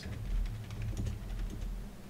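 Typing on a computer keyboard: a quick run of keystroke clicks over a low rumble.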